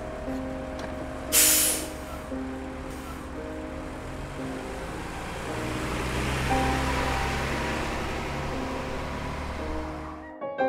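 City bus: a short pneumatic hiss about a second and a half in, then its engine running low and steady, louder from about halfway, under soft piano music.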